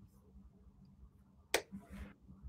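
Quiet room tone with a faint low hum, broken by one sharp click about one and a half seconds in.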